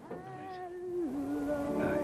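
A voice holding a long sung note, sliding down to a lower note about a second in and holding it.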